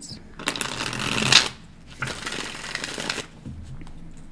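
A tarot deck shuffled by hand: two bursts of rapid card flicking, the first starting about half a second in and the second about two seconds in, each lasting a little over a second.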